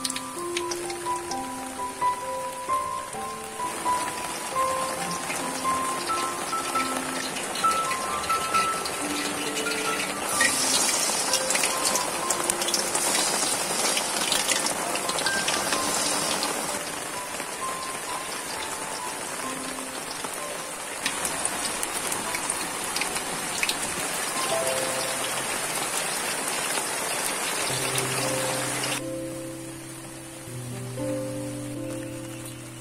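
Battered spinach leaves deep-frying in hot oil in a wok: a steady crackling sizzle that stops about a second before the end. Light background music plays over it.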